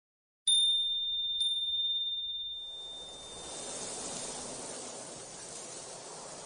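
Two high bell-like dings about a second apart, ringing on and fading away over a couple of seconds, then a soft steady hiss: sound effects opening the intro of a pop song.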